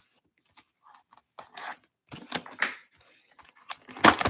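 A sealed cardboard trading-card box being slit along its glued sides and pried open: short scraping and tearing bursts, thickest around the middle, with a sharper crack as the flap pops free at the end.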